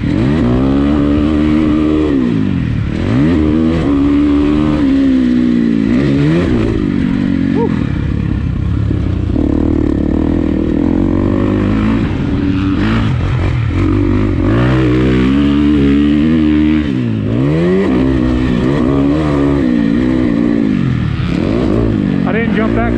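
2019 Husqvarna FC350 four-stroke single-cylinder dirt bike engine under way, revving up and down as the throttle is closed and opened. The pitch falls and climbs back several times over the stretch.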